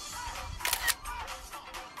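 A camera shutter click, heard once about two-thirds of a second in, over background music.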